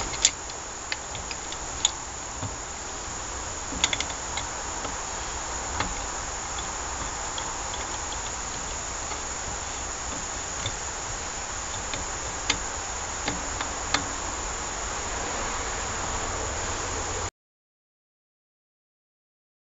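Scattered light clicks of a hand tool against metal as the bolts of a pressure washer pump are worked in a little at a time, over a steady high hiss. The sound cuts off suddenly near the end.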